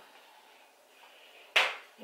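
Quiet room tone, broken about one and a half seconds in by a single sharp knock or slap that fades quickly.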